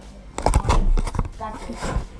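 A burst of loud thumps and clatter starting about half a second in, with a deep rumble at first and scattered knocks after, mixed with a voice.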